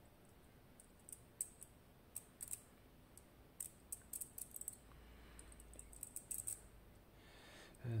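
Faint, sharp metallic clicks at irregular intervals, some in quick clusters, from a Miwa DS wafer-lock core and its key being handled, the key and spring-loaded wafers ticking against the core.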